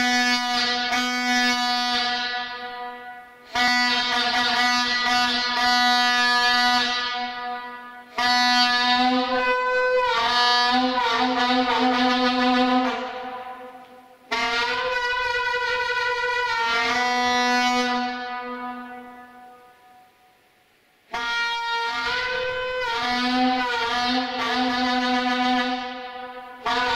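Vuvuzela blown inside a railway tunnel: five long blasts of a few seconds each on one low buzzing note, with short breaks between them; in some blasts the tone wavers, and one fades away before a gap near the end.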